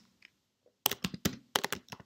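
Computer keyboard typing: a quick run of about half a dozen key clicks starting about a second in.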